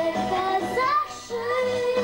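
A young girl singing into a handheld microphone over a backing track with a steady beat, with a short break between sung phrases about a second in.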